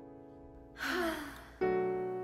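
A singer's long breathy sigh, falling in pitch, about a second in, over a held accompaniment chord that fades away; a new chord comes in near the end.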